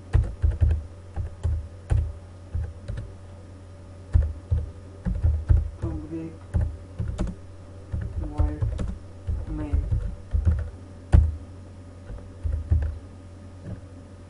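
Typing on a computer keyboard: irregular runs of keystrokes with short pauses between them, each keypress a sharp click with a dull thud underneath.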